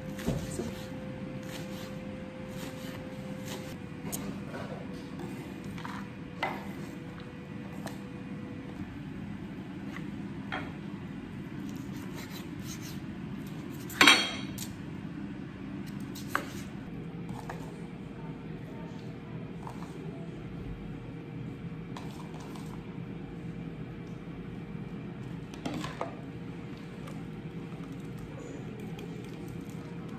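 Kitchen work at a counter: scattered knife taps on a wooden cutting board and clinks of dishes and cutlery, with one loud ringing clink about halfway through, over a steady low background hum.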